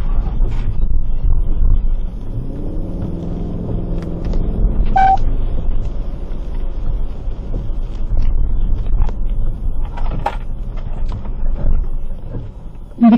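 Low rumble of a car driving, heard inside the cabin, with its engine note rising around three seconds in. A single short beep sounds about five seconds in.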